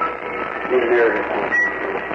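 A man speaking on an old, muffled sermon recording, his words hard to make out under a steady hiss.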